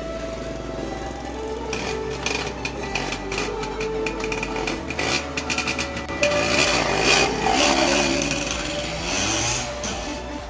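Yamaha Yaz's two-stroke engine being revved while the bike stands still, a rapid crackling rattle that builds from about two seconds in and is loudest around seven seconds, under background music.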